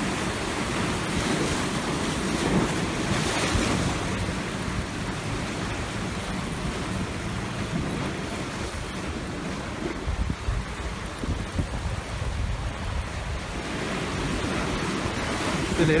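Sea surf washing and breaking against the rocks of a stone jetty, with wind buffeting the phone's microphone, strongest in gusts about two-thirds of the way through.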